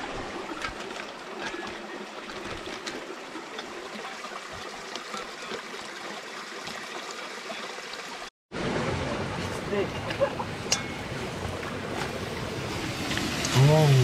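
Steady rushing of creek water. After a short break about eight seconds in, it comes back louder, with voices near the end.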